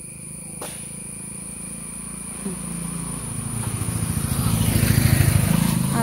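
A motor scooter's small engine approaching and passing close by, growing steadily louder through the second half.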